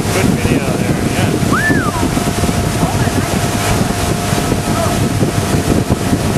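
Wind buffeting the microphone on a moving motorboat, over the engine's steady drone and the rush of water, with a few faint distant shouts.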